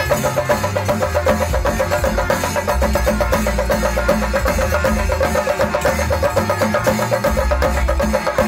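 Chenda melam: a group of chendas, Kerala cylindrical drums, beaten with sticks in a fast, dense, even rhythm.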